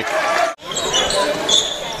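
Basketball game sound on a hardwood gym court: a ball dribbling and short, high sneaker squeaks, with a brief drop in the sound about half a second in.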